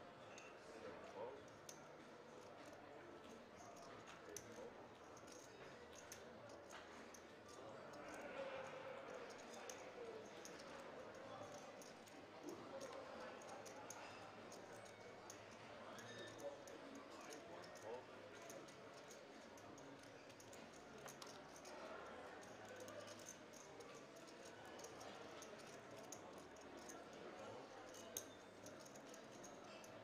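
Faint murmur of voices around a casino poker table, with frequent light clicks of poker chips being handled and stacked.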